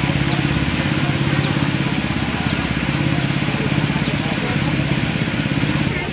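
A small engine running steadily at an even idle, with faint voices in the background.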